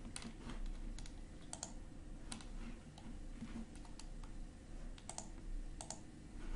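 Sparse, irregular clicks of a computer keyboard, a few taps spaced about half a second to a second apart, over a faint steady hum.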